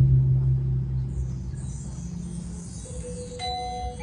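Balinese gamelan starting up: one deep gong stroke that hums and slowly fades. About three seconds in, bright, ringing metallophone notes begin.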